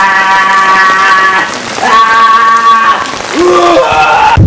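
Noise-rock music: long, distorted pitched tones held over a hiss, each sliding down in pitch as it ends.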